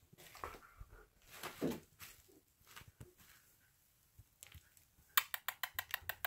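Young poodle puppies stirring in a litter heap with soft grunts and shuffling, then a quick run of sharp clicks, about eight a second, starting near the end.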